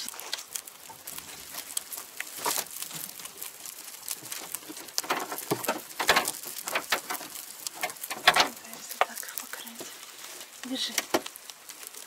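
Dry hay rustling and crackling in a rabbit hutch as it is handled and the rabbits feed, with many irregular light clicks and a few louder crackles.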